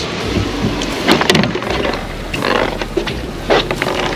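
Wind rumbling on the phone's microphone outdoors, with a few short knocks and handling noise.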